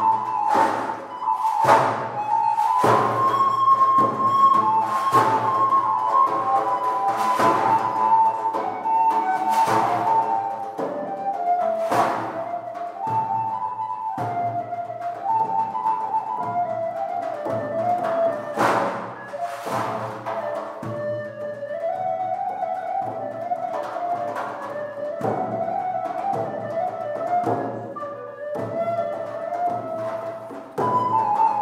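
Medieval music played by an early-music ensemble: a sustained melody moving in steps, over sharp struck beats every second or two.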